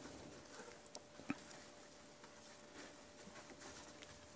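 Near silence with faint, scattered soft crackles and footfalls of a herd of African elephants walking past, the clearest snap about a second in.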